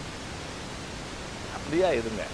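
Steady background hiss during a pause in speech. A man's voice starts again near the end.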